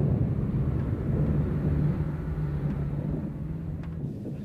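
A tank's engine running: a steady low rumble with a droning hum.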